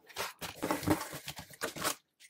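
Hands pressing down strips of painter's tape and handling a cardboard mailer box: irregular scratchy rustling with light clicks and taps.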